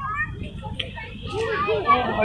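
Unclear voices talking, with a steady low rumble underneath.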